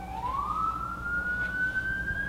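Emergency-vehicle siren wailing: a single tone that rises sharply in the first half second, then keeps climbing slowly.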